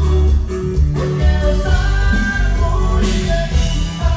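Live norteño band playing loudly: button accordion and saxophone melody over a heavy, pulsing bass beat.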